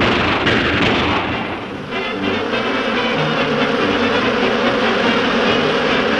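Early sound-cartoon soundtrack: a dense, noisy rush of sound for about the first two seconds, then the studio orchestra's score carrying on with held notes.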